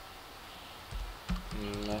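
A few scattered keystrokes on a computer keyboard, starting about a second in.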